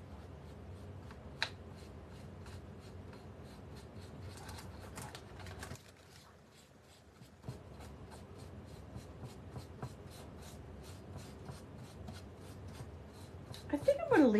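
A paintbrush scratching and rubbing as it works paint onto the raised details of a moulded plastic frame, a soft, even scraping, with one light tap about a second and a half in and a brief lull about six seconds in.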